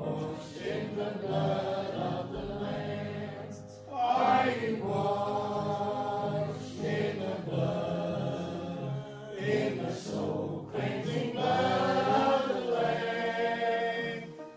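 A small church congregation singing a hymn together in long held notes, phrase by phrase, with short breaks between lines about four seconds in and again near ten seconds.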